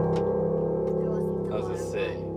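Upright piano ringing on a held C major chord, the closing chord of the song, slowly fading.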